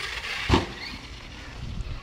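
Arrma Notorious RC truck landing on grass after a ramp jump, a single thud about half a second in, followed by wind noise on the microphone.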